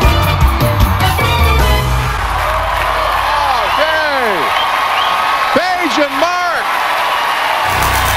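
Upbeat dance music with a heavy beat ends about two seconds in, giving way to a studio audience cheering and applauding, with loud whoops that rise and fall in pitch.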